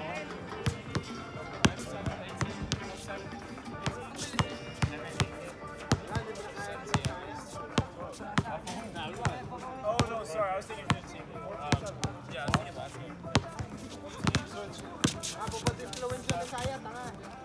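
Basketball bouncing on a hard outdoor court, dribbled repeatedly at an uneven pace, each bounce a sharp smack. Voices and music sit underneath.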